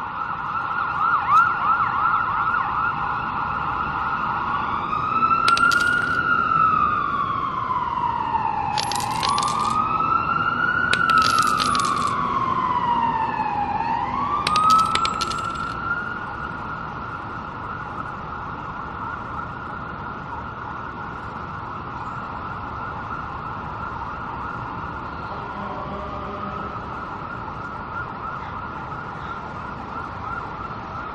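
Emergency-vehicle siren: a fast warbling yelp at first, then slow rising and falling wail cycles with a few short harsh blasts, going on more softly and steadily for the second half.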